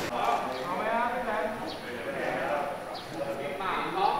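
People's voices talking and calling out, with a few faint short clicks.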